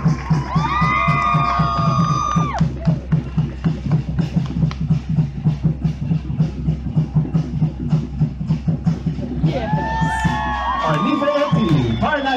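Rapid, steady drumming accompanying a fire knife dance, with long held shouts from voices about a second in and again near the end.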